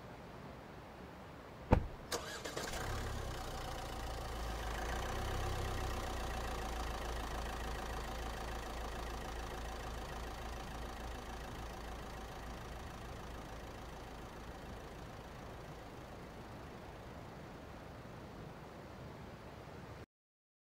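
A sharp knock, then a car engine starts and runs steadily, its sound slowly fading as the car, a hearse, pulls away.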